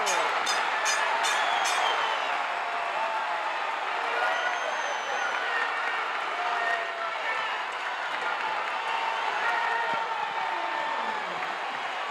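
Arena crowd cheering and shouting as a pinfall ends a wrestling match. There is a quick run of about five sharp strikes in the first two seconds.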